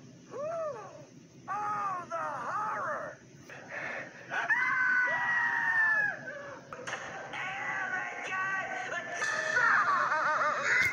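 Cartoon characters' voices screaming, played from a television. Short wavering screams come first, then one long held scream around the middle and more screaming near the end.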